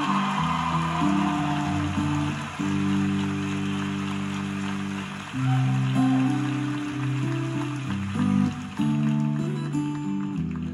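Guitar-led song played back through a stereo amplifier built on type 45 triode tubes: held low notes change every second or two under steady strummed chords, with no singing.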